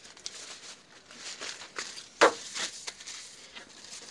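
Dry reed stems being laid into a wooden press: light rustling and scattered clicks of reed against reed and wood, with one sharp knock a little over two seconds in.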